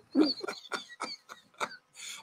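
A man laughing: a run of short, separate laughs, about three a second, the first the loudest and the rest fading.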